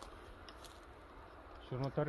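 Near silence with a low hum and a couple of faint clicks, then a man's voice starts near the end.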